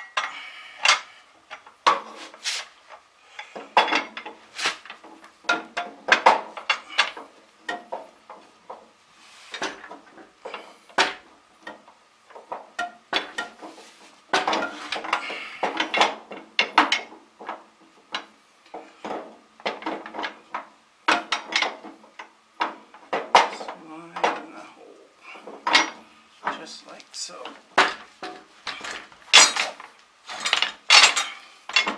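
Steel implement linkage parts clanking and clinking as a long rod is worked into its bracket by hand, in many irregular knocks.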